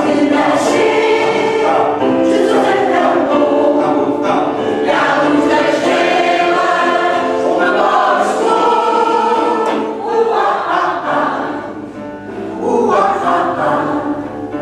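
Mixed amateur choir of older singers, mostly women's voices with a few men, singing a Janeiras song, a traditional Portuguese New Year carol. The voices hold long notes through the phrases, with a brief drop between phrases about eleven seconds in before the singing swells again.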